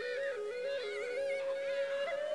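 Background flute music: a held, low melody stepping back and forth between two or three notes, with a higher, warbling line above it.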